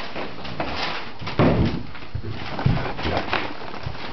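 Rustling and knocking of a boxed toy tool set's cardboard and plastic packaging being handled, with two louder thumps about one and a half and two and a half seconds in.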